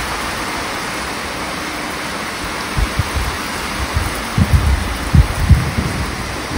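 Heavy rain falling steadily on a garden and its paving. From about three seconds in, gusts of wind buffet the microphone with irregular low rumbles, the loudest near the end.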